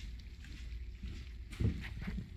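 A rubber-bladed rug squeegee drawn across a soaked rug, pushing water out of the pile with a wet swishing, and a couple of low thumps a little after halfway.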